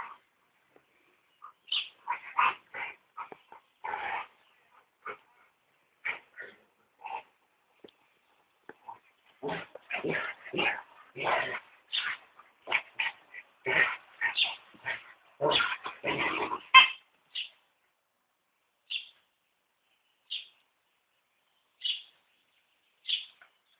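Two Slovak Cuvac dogs, an adult and a puppy, playing and vocalizing in short, irregular bursts. The bursts come thick and fast through the middle, then thin out to a few single high calls near the end.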